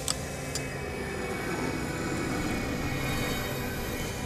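Film soundtrack: sustained music tones over a swelling low rumble, with two sharp clicks in the first second.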